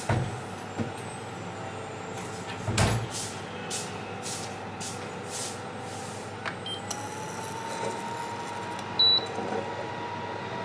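Oil heating in a nonstick frying pan on the stove, with scattered faint crackles over a steady background hum. There is a low knock about three seconds in, a steady whine that comes in from about seven seconds, and a short high beep near the end.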